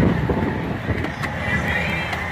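Strong wind buffeting a semi-truck cab, heard from inside as a steady low rumble, with a few light clicks.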